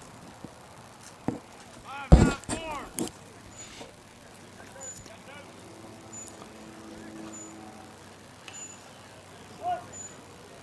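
Voices shouting at a ballfield, one loud burst of calls lasting about a second, starting about two seconds in, with a shorter call near the end. A faint high chirp repeats about once a second in the background.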